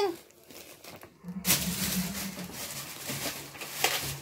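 Plastic grocery packaging rustling and crinkling as wrapped packs are handled. It starts about a second in and fades near the end, with a low steady hum under it.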